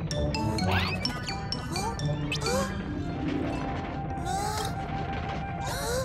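Playful children's cartoon music with comic sound effects: several quick sliding whistle-like tones rising and falling, and a few short knocks and clinks.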